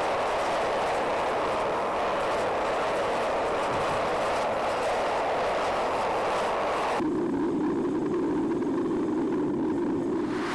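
Gas-fired Devil Forge melting furnace running at full heat, its burner making a steady rushing roar while brass melts in the crucible. About seven seconds in, the sound turns deeper and duller.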